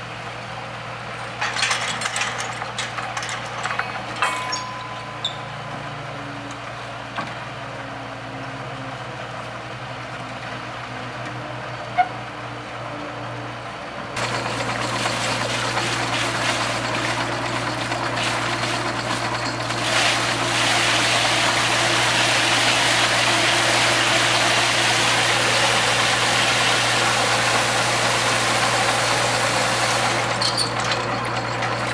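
Truck-mounted well-drilling rig's engine running steadily, with a few metal clanks in the first seconds as the drill bit is fitted. About halfway through, the sound switches to a louder, steady rushing as drilling fluid churns in the mud pit around the turning drill stem. It grows louder again a few seconds later.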